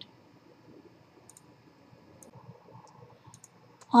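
A pause with faint room tone and a handful of faint, short clicks scattered through it.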